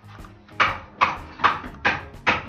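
A dog barking repeatedly in short, sharp barks, about two a second.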